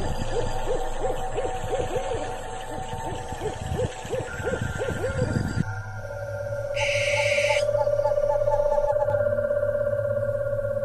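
Spooky owl hooting sound effect: a rapid run of short hoots for about six seconds. It gives way to a steady, held eerie tone, with a brief hiss about seven seconds in.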